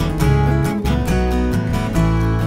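Acoustic guitar strumming chords in a folk song, with a second guitar playing along; no singing.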